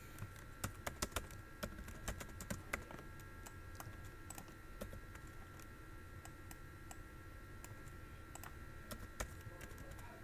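Computer keyboard typing, heard faintly: quick key clicks come thickly for the first three seconds, then thin out to scattered single clicks, with a sharper click near the end. Under it runs a faint steady high hum.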